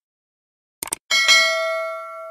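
Subscribe-button sound effect: a short mouse click just under a second in, then a bell ding that rings on several pitches and slowly fades.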